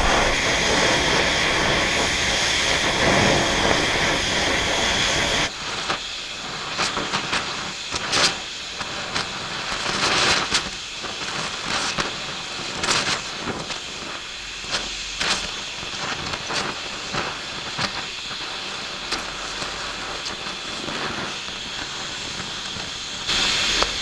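Oxy-acetylene torch flame hissing steadily on a steel disc blade as gas welding rod is melted in. About five seconds in the steady hiss drops away to a quieter sizzle with irregular pops and crackles as the molten steel bubbles and throws sparks.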